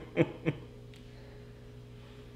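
Two short vocal sounds from a man, each falling in pitch, about a third of a second apart near the start, then a steady low room hum.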